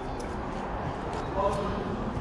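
Steady background hubbub of a car auction hall, with a short faint voice about a second and a half in.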